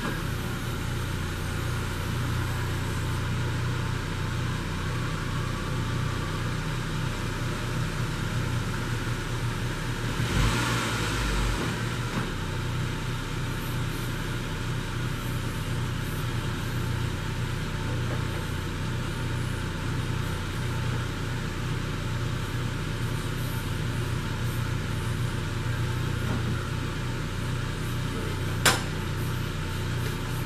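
A 1996 Saab 900 SE Turbo's turbocharged four-cylinder engine idles steadily while the power convertible top goes up. There is a brief louder rush about ten seconds in and a sharp click near the end.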